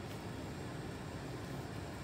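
Steady background noise: an even, faint hiss with no distinct events.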